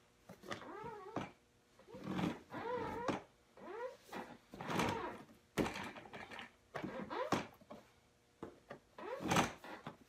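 Ewin Racing gaming chair creaking and squeaking in a string of short, wavering squeaks as a person sits in it and leans back against the reclining backrest, with a couple of sharp knocks from the chair.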